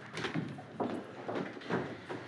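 Indistinct voices of people talking off-microphone, mixed with scattered knocks and clicks as people move about the room.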